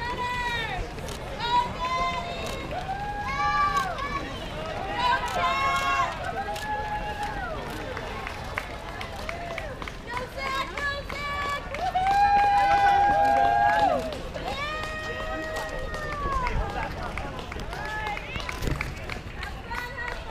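Spectators calling out and cheering to passing runners, many separate drawn-out shouts at different pitches, with the patter of many runners' footsteps on the road. The loudest is one long held shout about twelve seconds in.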